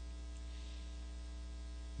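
Steady electrical mains hum, a constant low buzz that does not change.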